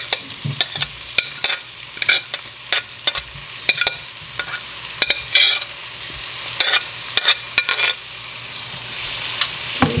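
Grated garlic sizzling in hot vegetable oil in a pot, with many sharp clicks and scrapes of a spoon pushing grated Scotch bonnet pepper off a plate into it. The sizzle grows louder near the end as the pepper lands in the oil.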